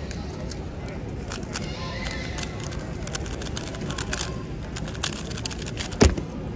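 A 3x3 speedcube turned very fast by hand: a dense run of quick plastic clicks and clatters from the layer turns for a few seconds, ending with a sharp slap as the hands come down on the StackMat timer pads to stop it.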